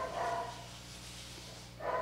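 A short pause in speech: a faint, steady low hum, with a soft breath right at the start and another just before the end.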